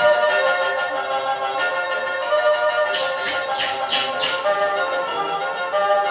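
Music from a projected animated cartoon's soundtrack, held melodic notes sounding together, with a few short percussive accents about three to four seconds in.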